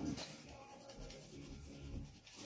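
Wax crayon rubbed back and forth over paper in repeated short strokes, laying down and blending light green colour.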